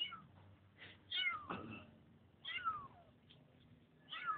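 Young kitten mewing: a few short, high-pitched cries, each falling in pitch.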